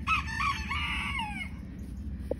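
A rooster crowing once: a few short clipped notes, then a long drawn-out note that falls in pitch and ends about a second and a half in.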